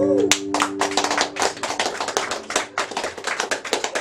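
Audience clapping in a small bar, the claps starting a moment in and continuing, while the last strummed chord of an acoustic guitar rings out and fades over the first couple of seconds.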